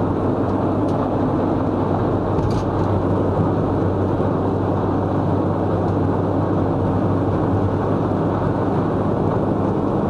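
Steady road noise inside a moving car's cabin at motorway speed: tyre and wind noise over a low, even engine hum.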